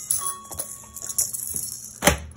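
A toy electronic keyboard sounding a single held note for about a second, with a few light taps and clicks around it.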